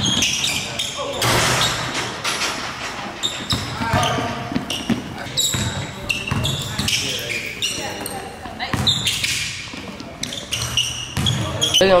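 Basketball game in a gym: balls bouncing and hitting the hardwood, sharp sneaker squeaks, and players' voices, all echoing in the hall.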